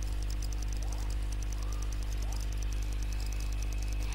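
Steady low electrical hum with faint hiss: the background noise of the lecture recording.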